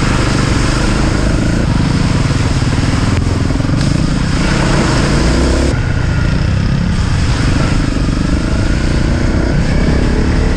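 Honda CRF dual-sport motorcycle's single-cylinder four-stroke engine pulling under load as it is ridden along a muddy track, the revs rising and falling with the throttle, over a steady rush of riding noise.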